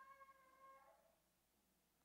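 Near silence, with a faint steady pitched tone that fades out about a second in.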